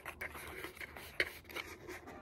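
Self-adhesive paper rustling and rubbing as it is handled and pressed onto a box, with a few small clicks, the sharpest about a second in.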